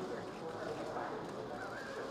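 Indistinct murmur of a crowd of many voices, steady throughout.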